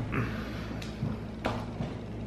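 A few light clicks and taps from handling a knife and chocolate egg pieces on a paper plate, one a little under a second in and another about halfway through.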